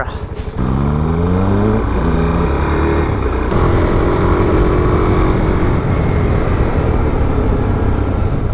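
Suzuki DRZ400SM single-cylinder engine accelerating hard through the gears, its pitch climbing, dropping at an upshift about two seconds in and again at about three and a half, then holding a steadier note. A rushing wind noise sits over it on the helmet camera.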